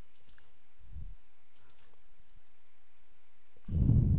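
A few faint computer keyboard key clicks, with a soft low, muffled sound near the end.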